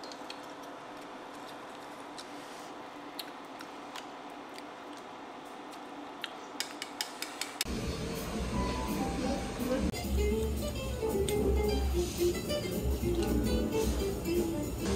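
A steady restaurant background hum with occasional light clinks of tableware, then a quick run of sharp clicks. A little past halfway, background music with a steady low beat and a plucked melody begins and continues.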